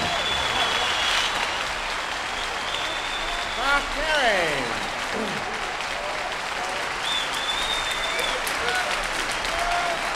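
Concert audience applauding after a big-band jazz number, with a few high whistles and a shout that falls in pitch about four seconds in.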